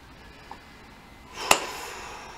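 A single sharp tap about one and a half seconds in, with a short ringing tail, over faint room hiss.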